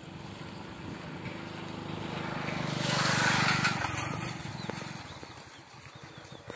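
A motor vehicle passing by, its engine and tyre noise growing louder to a peak about three seconds in and then fading away.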